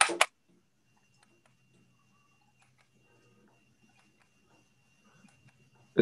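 Very faint low hum with scattered light ticks from the Philco Directa remote system's tuner motor turning the set's channel selector, after a short sharp sound at the very start.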